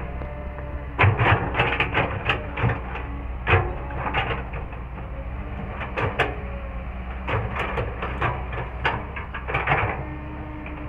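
Kobelco SK200 hydraulic excavator's diesel engine running with a steady low hum, while its bucket digs into dry, rocky soil with repeated clusters of sharp clanks, knocks and scrapes.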